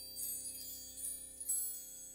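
Soft wind chimes tinkling in three or so brief clusters over a quiet, sustained low chord.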